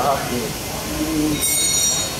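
A short high-pitched squeal in the last half second, over a steady background hiss.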